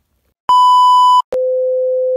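Electronic test-tone sound effect of the kind played over a TV test card: a loud, steady high beep about half a second in, then straight after it a lower steady tone an octave down. Both start and cut off abruptly.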